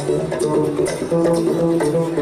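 Live acoustic instrumental music from a mandolin-led string band: plucked strings over an upright bass played pizzicato, with held melody notes above.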